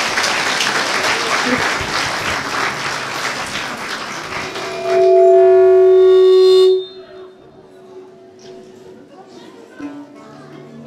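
Audience applauding for about four and a half seconds. Then a loud steady pitched tone is held for about two seconds and cuts off suddenly.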